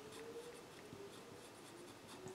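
Felt-tip marker writing on paper in faint strokes.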